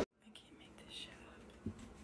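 Faint whispering after a brief moment of silence, with a soft knock about three-quarters of the way through.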